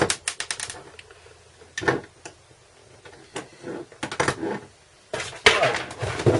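Handling noises as a soldering station and its lead are moved about on a worktop. A quick run of light plastic clicks comes at the start, then a few scattered knocks, and near the end a longer scraping rustle as the station base is taken in hand and shifted.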